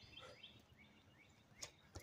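Faint birds chirping in short falling notes, then near the end two sharp slaps as a person's hands land on concrete, dropping into the plank of a burpee.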